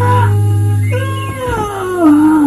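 A cartoon character's long yawn, one drawn-out voice sliding steadily downward in pitch from about a second in, over a held low note of background music.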